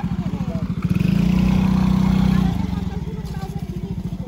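Small motorcycle engine idling with a fast, even low pulse. About a second in it is revved and held higher for a second and a half, then drops back to idle.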